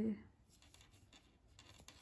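Faint scratching and light clicks of a metal crochet hook drawing yarn through stitches as single crochet is worked along a motif's edge.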